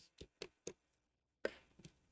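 A few faint, sharp clicks or taps: three quick ones in the first second, a louder one about halfway, and a softer one near the end.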